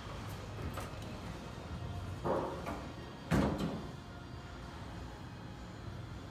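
Hall doors of a 1972 Otis traction elevator sliding shut. There is a sound about two seconds in and a louder thud about three seconds in as the panels meet.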